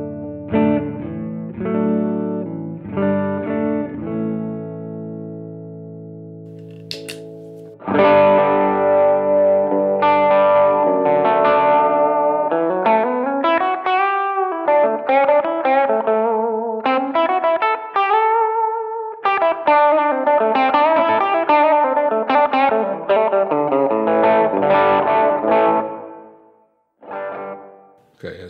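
Single-coil electric guitar played clean, chords ringing out, then a click about seven seconds in. From there it is much louder and brighter through the DS Custom Range T germanium treble booster, playing lead lines with bent notes.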